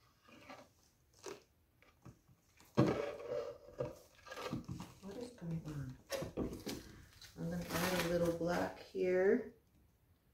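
A woman's voice talking indistinctly, starting about three seconds in, after a few faint clicks of handling.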